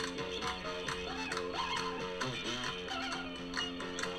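Slide guitar played on a working shotgun converted into a slide guitar: sustained plucked notes with the slide gliding between pitches a few times.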